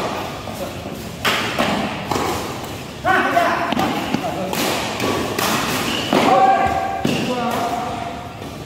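Badminton rally: sharp racket strikes on the shuttlecock and thuds of shoes on the court, a few each second, with players' voices calling out between shots.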